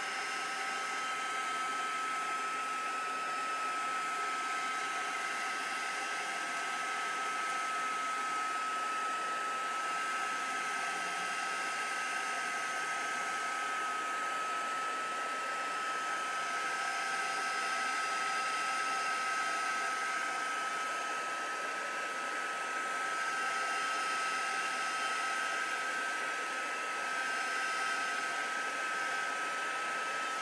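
Handheld hot-air dryer running steadily, drying wet craft paste on paper. It makes an even rushing blow with a thin constant whine.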